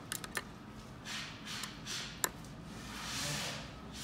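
Faint handling sounds from working on a 3D printer's ball-screw Z-axis carriage: a few light clicks of a hex driver on the metal parts, a sharper click a little past two seconds in, and soft swells of rubbing as the bolts are worked loose a little.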